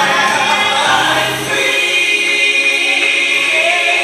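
Gospel music with a choir singing, settling into long held notes partway through.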